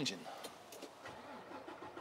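Semi-truck tractor's diesel engine being cranked by the starter and catching, heard faintly from inside the cab, with the sound settling lower after about a second.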